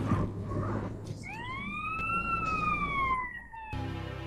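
A single siren-like wail that rises and then falls in pitch over about two seconds, over a noisy hiss. The sound cuts in abruptly at the start and stops sharply just before the end.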